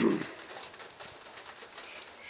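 A pause in a man's speech: his last word dies away in the first half second, leaving only faint, steady background noise.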